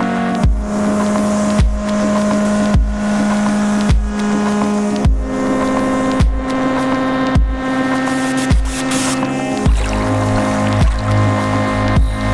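Background music with a slow, heavy beat, a deep hit about once a second under sustained synth chords that change every beat or so; a deep bass line comes in near the end.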